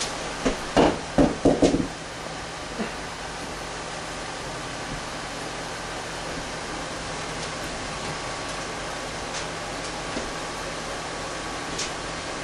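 Steady hiss of room tone, with a quick cluster of four or five short, loud sounds about a second in.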